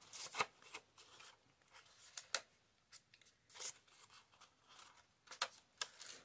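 Paper rose petals cut from old book pages rustling and scraping faintly as they are curled around a pencil, in a few short, separate bursts.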